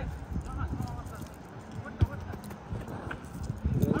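A football kicked once, a single sharp thud about two seconds in, with players shouting to each other.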